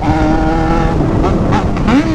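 Yamaha XJ6 motorcycle's 600 cc inline-four engine under way, held at steady high revs, then breaking off about a second in and revving up again near the end, as in a gear change under acceleration. Wind rushes over the microphone.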